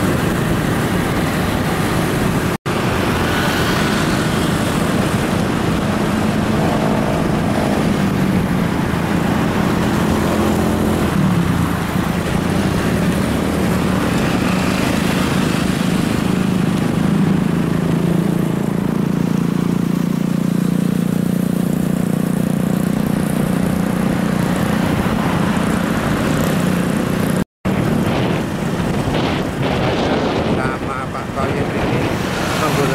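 Small motorcycle engine running on the move, under steady wind and road noise, its pitch rising and falling with speed. The sound cuts out briefly twice, once about three seconds in and once near the end.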